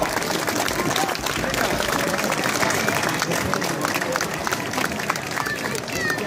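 Outdoor crowd applauding steadily, dense clapping mixed with scattered voices.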